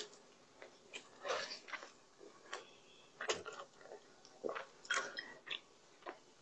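Soft pull-apart bread being chewed close to the microphone: a string of quiet mouth clicks, with louder bursts about a second in, a little after three seconds and near five seconds.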